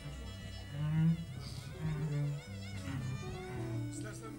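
Live band music without singing: sustained low notes under a melody line that wavers in wide vibrato through the middle of the passage.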